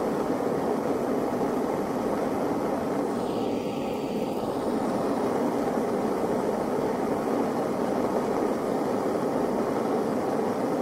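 Gas blowtorch flame running steadily against a plaster-and-cement test brick, a constant rushing hiss, with a brief change in tone about three to four seconds in.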